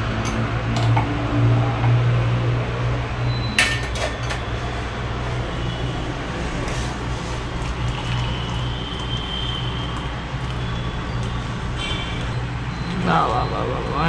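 Chai poured from a steel saucepan through a metal tea strainer into a mug, with one sharp metal clink about four seconds in, over a steady low hum.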